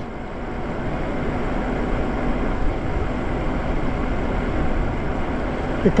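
Steady rush of wind and road noise from riding a Lyric Graffiti e-bike along a paved road, with a low rumble of wind buffeting the microphone.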